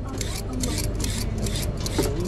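Julienne peeler scraping down a raw carrot in quick repeated strokes, shredding it into strips.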